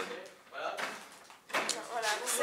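People talking indistinctly in a small room, with a brief knock about one and a half seconds in.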